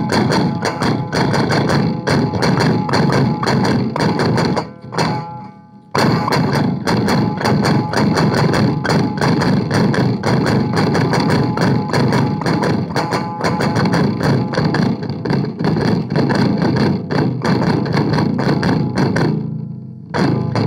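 Electric guitar played very fast, a dense stream of rapidly picked notes with a hard, percussive attack. The playing thins and drops away at about five seconds in, then comes back suddenly a second later.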